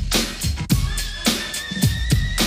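Instrumental intro of a song: a steady drum beat with a thin, wavering high tone that comes in about halfway through and edges upward.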